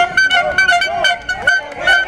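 Small handheld horns blown in short, repeated toots, about four a second, with marchers' voices shouting among them.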